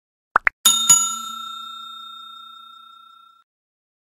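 Subscribe-button animation sound effects: a quick double click, then a bell ding struck twice that rings on and fades away over about two and a half seconds.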